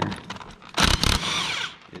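Cordless impact wrench running in one short burst that starts about three quarters of a second in and lasts under a second, breaking loose a bolt on a tractor steering box that was not very tight.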